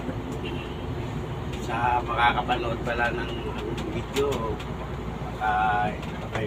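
Engine and road noise of a loaded truck running steadily at road speed, heard inside the cab. Short high-pitched tonal sounds come about two seconds in, again at three seconds, and just before the end.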